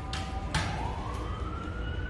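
A siren's slow wail, one tone rising steadily for about a second and a half and just starting to fall at the end. A few short scratches of a marker on a whiteboard come near the start.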